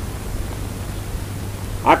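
A pause in a man's spoken discourse, filled by the recording's steady hiss and a low hum; his voice comes back near the end.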